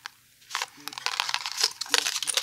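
Packaging handled by hand: a quick run of crinkling, rustling sounds starting about half a second in, as the cardstock charm cards and wrapping are moved.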